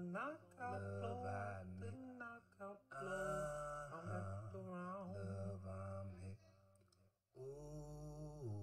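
A song: a voice sings a drawn-out melody without clear words over a steady low bass. The music drops out briefly near the end, then comes back.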